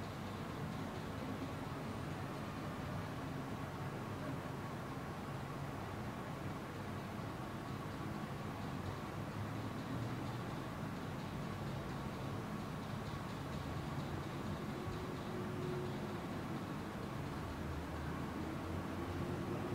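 Steady room tone of a large hall: an even hiss with a low hum and a faint steady tone, unchanging throughout.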